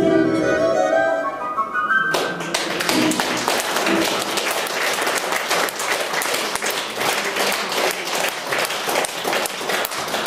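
A woman's folk song ends on its last held note about two seconds in. Audience applause follows and runs on steadily.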